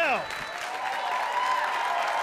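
Comedy club audience applauding steadily, with voices calling out over the clapping.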